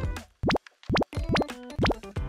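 Cartoon-style transition sound effect: a run of short plops, about four, each sliding quickly up in pitch, as the background music drops out at the start.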